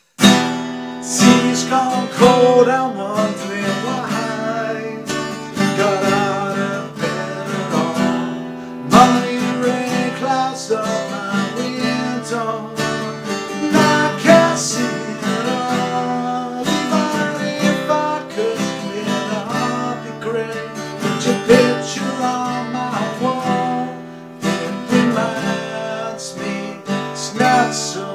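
Acoustic guitar strummed, a continuous run of chords with a few harder accented strums.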